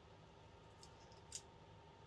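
Near-silent room tone with a few faint ticks and one sharper click about a second and a half in: small plastic pen parts being handled and snapped together.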